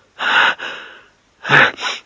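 A man breathing hard: four quick, loud, gasping breaths in two pairs, acted as panting after a struggle.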